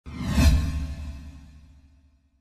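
Intro whoosh sound effect that swells to a peak about half a second in over a deep rumble, then fades away over the next second and a half.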